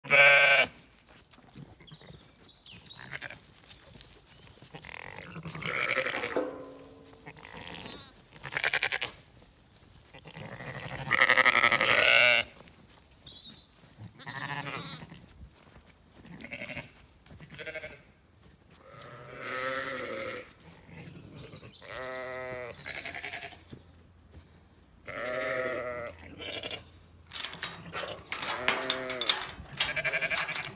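Zwartbles sheep bleating again and again, about nine separate calls, some with a wavering pitch, the loudest right at the start and around 11–12 seconds. In the last couple of seconds a run of sharp metallic clicks and rattles comes from a rusty metal gate being handled.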